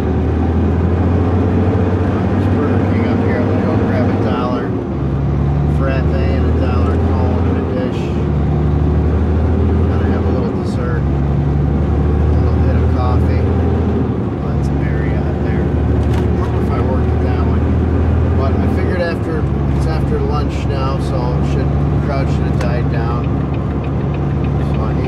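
Heavy dump truck's diesel engine heard inside the cab while driving, its pitch running in stages that break off with a brief dip about every three to five seconds as the transmission shifts through the gears.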